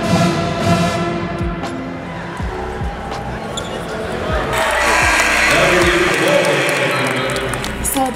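A basketball dribbled on the court, a string of short low thumps echoing in an arena, over music playing through the hall. About halfway through, crowd noise swells up.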